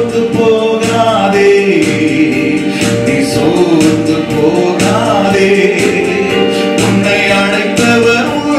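A man singing a Christian worship song into a microphone over instrumental backing with a regular beat.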